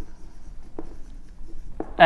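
Marker pen writing on a whiteboard: soft scratching strokes as words are written out.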